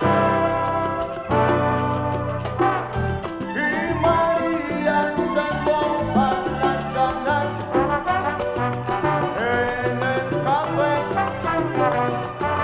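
Salsa band playing an instrumental passage: a brass section carries the melody over a steady bass line and percussion, opening with a held brass chord.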